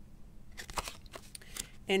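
A handful of soft rustles and scrapes: a card being handled and laid down on a cloth-covered table.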